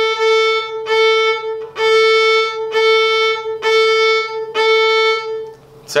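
Violin bowed at the middle contact point, halfway between bridge and fingerboard, giving the normal tone. The same note is played in long separate bow strokes, about one a second, and stops shortly before the end.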